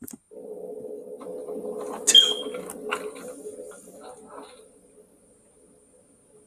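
A door being unlocked and opened: a few sharp metallic clicks of the lock and handle about two to three seconds in, over a low steady hum that fades away after a few seconds. A single click right at the start.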